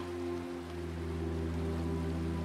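Soft ambient background music: sustained low pad tones held steadily, the low note shifting about half a second in, over a faint even hiss.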